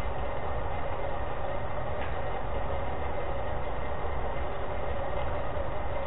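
Steady background noise of a lecture-room recording, with a faint constant hum and low rumble.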